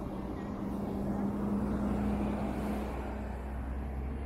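A motor vehicle's engine hum swelling and fading as it passes by, over steady city street noise.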